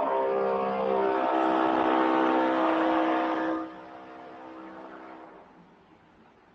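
A motor vehicle's engine going past: a steady hum with hiss, loud for about three and a half seconds, then dropping away and fading out.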